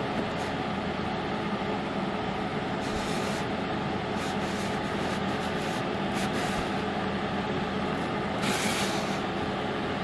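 A steady machine hum, like a small fan or motor running, with a few short soft hisses, the longest lasting about half a second near the end.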